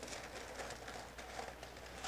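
Faint rustling and crinkling of paper as sheets of pattern paper and graphite transfer paper are lifted and folded back by hand.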